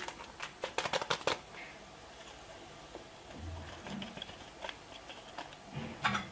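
A quick run of crisp rustling clicks, then a few soft low knocks, as leavening powder is added to a bowl of baghrir batter.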